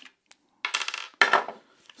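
Hard clicks, a short rattle, then a sharp metallic clink about a second in, as the front screw is undone and the magazine is taken off a Steambow Stinger Compact pistol crossbow.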